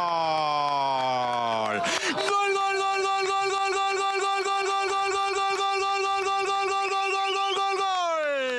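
A football commentator's long drawn-out goal shout. It opens with a falling cry, breaks off about two seconds in, then holds one high note with a slight wavering for about six seconds.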